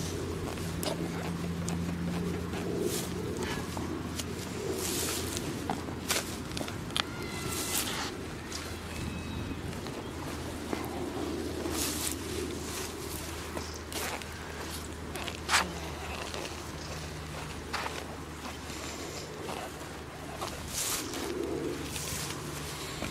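Spade blade being pushed and stamped into grass turf, with scattered crunches and rustles as the sod is cut and boots shift on the grass, over a steady low hum.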